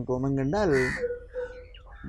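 A man's voice speaking for about a second, then trailing off into a faint steady tone and softer sounds.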